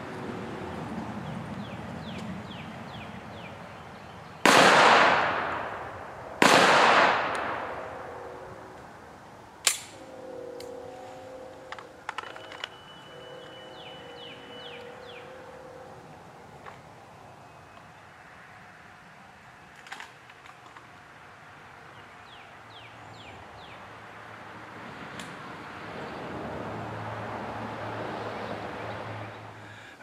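Two pistol shots from a SIG Sauer 1911 STX in .45 ACP, fired about two seconds apart starting about four seconds in, each trailing off in a long echo.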